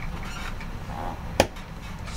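A single sharp click or tap about one and a half seconds in, over a low steady hum.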